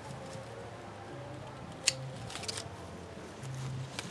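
Hand pruning shears snipping an avocado budwood shoot from the tree: one sharp snip about two seconds in, then a few softer clicks.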